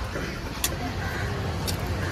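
Busy outdoor market background: a steady low rumble like a running vehicle engine, with faint voices. One sharp click comes about a third of the way in.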